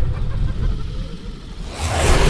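Trailer sound design: a deep low rumble that fades through the middle and swells again near the end into a wide burst of noise.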